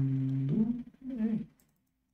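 A man's voice humming a held, thinking "mmm" that bends in pitch about half a second in, then a short second "hm" that rises and falls. It is a wordless hesitation sound.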